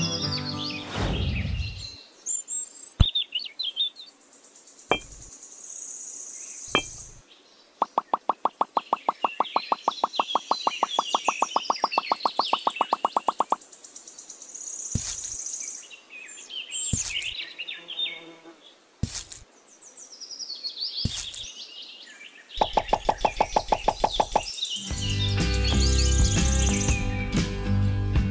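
Background music fades out about two seconds in, and comes back about three seconds before the end. In between, birds chirp, with scattered single clicks and two stretches of rapid, even pulsing.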